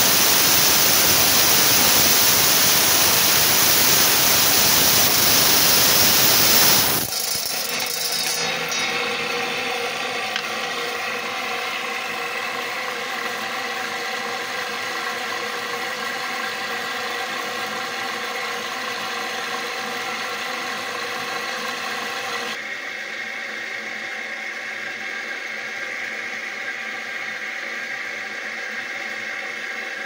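Diamond-bladed lapidary trim saw cutting through an agate nodule held by hand, a loud steady grinding hiss that cuts off suddenly about seven seconds in as the cut finishes and the stone parts. The saw then runs on with no load, a steady hum with a whine in it.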